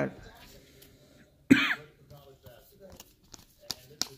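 A man's brief throat-clearing about a second and a half in, then a stack of glossy basketball trading cards being flipped through by hand: a run of small crisp clicks that come faster near the end.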